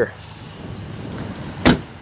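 A pickup truck's cab door is shut once with a sharp, solid slam about one and a half seconds in, after a moment of low rustling and handling noise.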